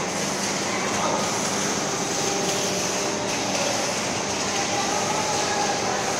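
Packing machine running steadily, a continuous, unchanging mechanical noise.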